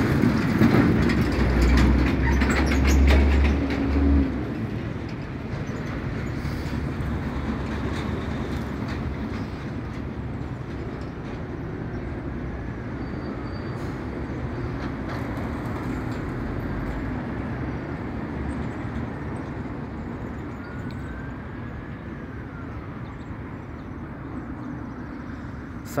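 Heavy vehicle going past: a loud low rumble for about four seconds, then a steadier rumble that slowly fades away. Three faint high squeals rise and fall in the second half.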